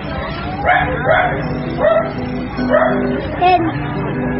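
A dog barking about five times, roughly once a second, over steady background music.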